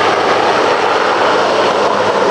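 Marine One helicopter climbing away after lift-off, its engines and rotor a loud steady rush mixed with the hiss of a heavy downpour.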